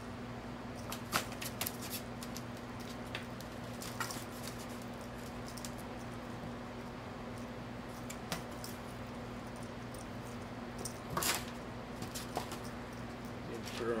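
A cat's paws and claws tapping and scuffing on a laminate floor and cardboard in scattered short clicks, with one louder scuffle late on, over a low steady hum.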